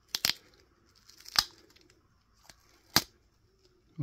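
Duct tape being peeled off small ink sample vials in a few short, sharp rips: a quick double rip at the start, then single rips about one and a half and three seconds in.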